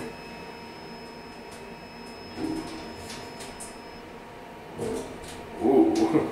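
Machine-room-less traction lift (ThyssenKrupp Evolution Blue, variable-frequency drive) running in its glass cab: a steady hum with thin, steady whining tones, the highest of which stops about four seconds in. A short louder voice-like sound comes near the end.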